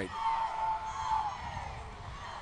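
Crowd noise from the stands at a high school football game, with one steady held note over it for about a second and a half before it fades.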